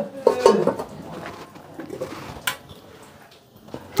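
Metal pot lids being handled on cooking pots, with one sharp metal clink about two and a half seconds in.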